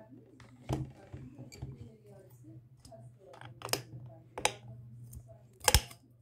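Handling noise from a phone being repositioned: a few sharp knocks and clicks, the loudest a double knock near the end, over a low steady hum.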